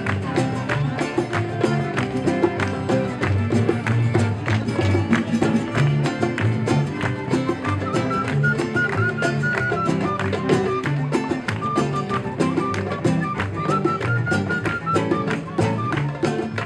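Acoustic street band playing an instrumental passage: strummed acoustic guitars, double bass, cello and a hand drum keeping a steady beat, with a high held melody line coming in over it about halfway through.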